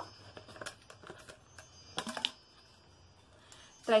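Irregular clicks and rustles of a new plastic water bottle being handled and opened, its plastic lid and parts knocking and scraping.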